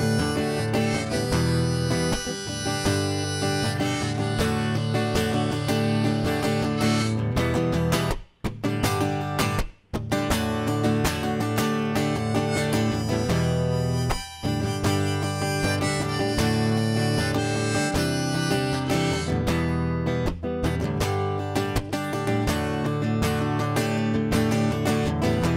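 Harmonica solo over strummed acoustic guitar, an instrumental break in a folk-country song. The music stops briefly twice, about eight and ten seconds in, and dips once more a few seconds later.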